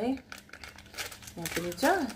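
Crinkly plastic snack packets being handled, a short spell of crackling in the first half, followed by a woman's voice.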